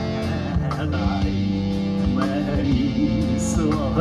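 Solo electric guitar played live, with held, ringing notes moving through a melody.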